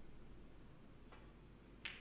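Snooker balls in a quiet hall: a faint tap of the cue tip on the cue ball about a second in, then a sharper click as the cue ball strikes a red near the end.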